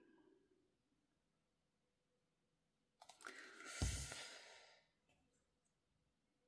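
Mostly near silence, broken about three seconds in by a brief rustle of hands handling small paper craft pieces, with one soft knock against the craft mat.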